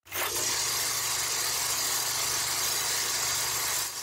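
Film projector starting and running steadily: a low hum under an even hiss.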